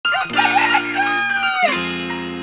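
A rooster crowing once, the crow ending in a long held note that falls away at the end, over music with steady held chords.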